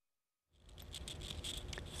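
Dead silence for about half a second, then faint room noise from an open studio microphone with light ticks and rustles, rising a little.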